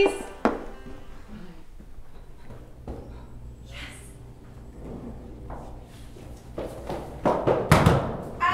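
A door shuts with a single thunk about half a second in, over quiet music that plays throughout. Near the end comes a cluster of loud, heavy thumps.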